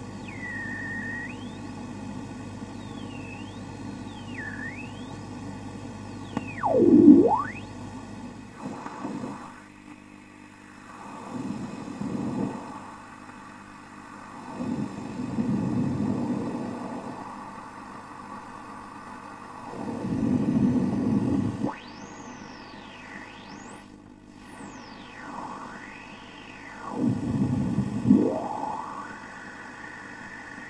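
Radio frequency interference: a radio hissing with static over a steady low hum, with whistling tones that swoop down and back up in pitch several times and swells of rushing noise every few seconds. The hum drops out about a third of the way in.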